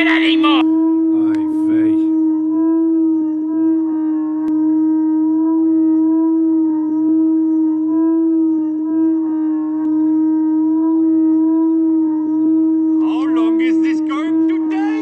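A cartoon Old English Sheepdog howling: one long howl held at a single steady pitch for about twelve seconds. Brief cartoon voices sound over it at the start and again near the end.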